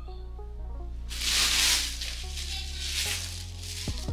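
Music plays steadily. About a second in, a loud burst of plastic shopping-bag rustling lasts just under a second, with lighter rustles after it.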